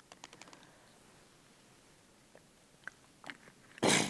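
Faint room tone over the lectern microphone with a few small clicks, then a short, loud, noisy rush near the end: a quick breath drawn in close to the microphone before speaking.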